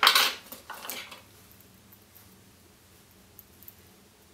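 Metal pliers clattering as they are picked up off the tying bench: a sharp clink at the start, a smaller clink just under a second later, then only a couple of faint ticks.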